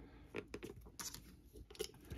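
Faint, scattered taps and rustles of hands handling a foil-covered cardboard trading-card box.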